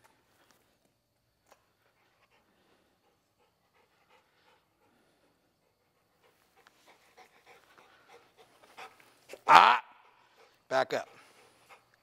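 Mostly quiet at first, then a dog panting faintly from about halfway through, with two short loud vocal calls near the end.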